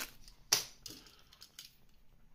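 Handling noise from small objects being picked up: one sharp click about half a second in, then a few faint ticks.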